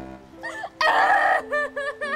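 Rapid, high-pitched nervous laughter in short cackling pulses, broken about a second in by a loud, harsh burst of noise, over soft background music.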